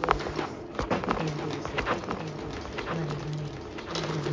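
Several short slurping sips of coffee, over low tones that come and go about once a second.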